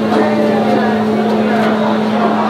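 A steady mechanical hum from a kitchen exhaust hood fan, one constant low tone, under the chatter of a busy food hall.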